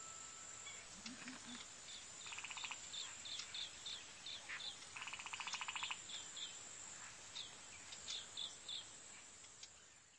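Outdoor nature ambience: birds chirping in short, repeated high calls, with two buzzy trills a few seconds apart over a faint steady hiss, fading out near the end.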